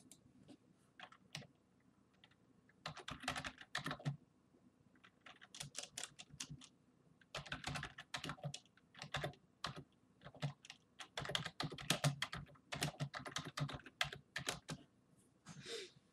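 Typing on a computer keyboard: a few scattered keystrokes at first, then bursts of rapid keystrokes about a second long with short pauses between.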